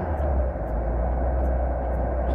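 Car engine running at low revs with its choke still pulled, a steady low rumble heard from inside the cabin as the car pulls away on snow. The engine is running on suspect low-grade 80-octane petrol, which the driver blames for the revs sagging and the engine stalling.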